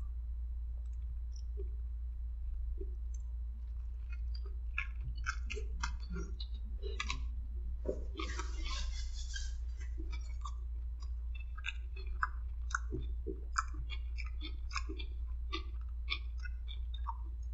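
A person chewing a bite of a juicy, unbreaded chicken sandwich close to the microphone, with many small wet mouth clicks and smacks. About eight seconds in there is a brief rustle of a paper napkin wiped across the mouth.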